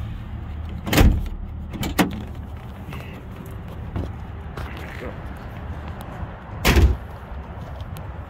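Car door being opened and shut as someone climbs out: sharp knocks about one and two seconds in, then the loudest thump near the end, with rustling handling noise between.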